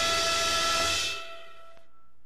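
Orchestral theme music ending on a held chord with a bright hissing wash over it. The chord fades away about a second in.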